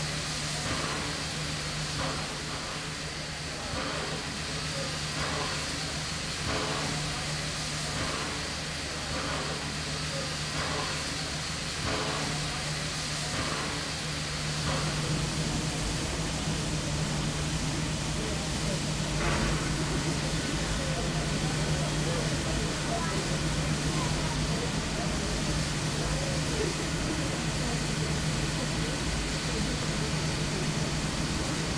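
Stationary R class steam locomotive venting steam: a steady hiss with a low hum beneath it, growing louder about halfway through. Before that there is a regular beat of roughly one pulse a second.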